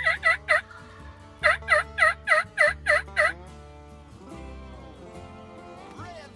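Wild turkey calls: a short run of loud, evenly spaced yelping notes at the start, then a longer run of about eight at roughly four a second.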